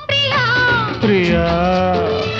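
Telugu film song: a singer's voice bending and holding long gliding notes over a steady low orchestral accompaniment. There is a brief break at the start.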